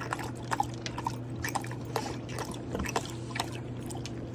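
A husky lapping water from a plastic bowl: irregular wet laps, about three or four a second.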